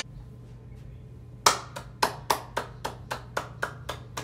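One person clapping hands, sharp separate claps about four a second, starting about a second and a half in over a low steady room hum.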